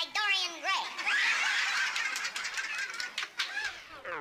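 People laughing and chattering, with short chuckles rising and falling in pitch.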